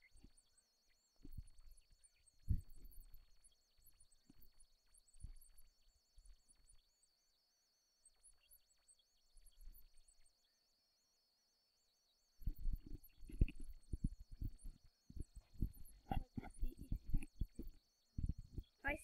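Faint, short low thumps and puffs on the microphone: a few scattered ones, then a quick irregular run of them in the last five seconds, over a faint steady high-pitched whine.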